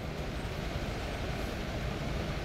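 Steady low background rumble with a faint even hiss and no distinct events.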